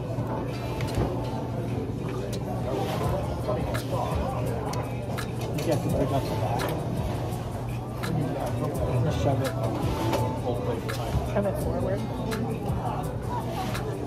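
Restaurant dining-room ambience: background chatter of other diners with many short clinks of dishes and cutlery, over music and a steady low hum.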